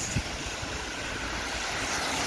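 Steady hiss of city street traffic on a wet road, with low wind rumble on the microphone.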